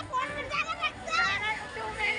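Riders shrieking and laughing on a moving fairground ride: several high voices, a child's among them, squealing with pitch that swoops up and down in overlapping bursts.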